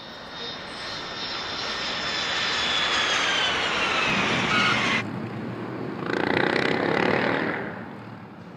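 An aircraft engine running past, its noise growing louder while a whine falls slowly in pitch. It cuts off suddenly about five seconds in, and a second, shorter stretch of the same kind of noise follows.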